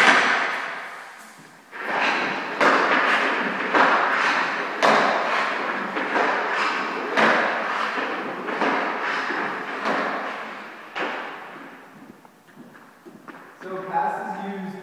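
Hockey puck passed back and forth between two sticks: sharp clacks as the puck is struck and received by the blades, roughly once a second, each trailing off in the echo of a large hall. The strikes stop about three seconds before the end.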